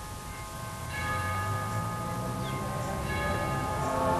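Church bells ringing: struck tones that hang on and overlap, with fresh strikes about a second in and again about three seconds in.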